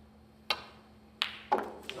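A long red potted at snooker: the cue tip clicks against the cue ball about half a second in, then sharp clicks of ball on ball and the red dropping into the pocket. Applause is just starting at the very end.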